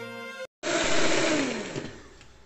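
Background music stops about half a second in. Then an electric hand mixer whirs loudly in cake batter and is switched off, its motor winding down with a steadily falling pitch.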